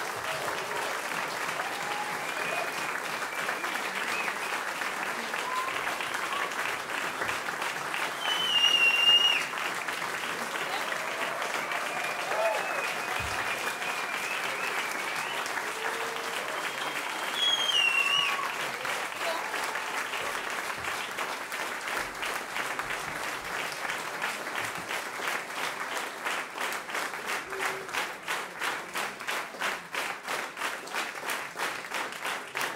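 Concert audience applauding warmly, with loud whistles twice and cheering voices. Toward the end the clapping falls into a steady beat in unison, the crowd calling for an encore.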